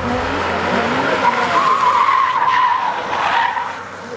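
A car cornering hard through a tight tarmac hairpin, its tyres squealing for about two seconds under the engine's rising and falling note, then fading as it drives away.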